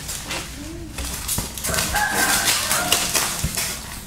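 Plastic packaging and taped wrapping crinkling as a parcel is handled. An animal call wavers for about a second and a half, starting about two seconds in.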